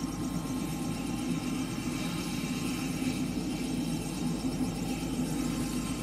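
Steady low rumble of vehicle engines, even throughout with no sudden sounds.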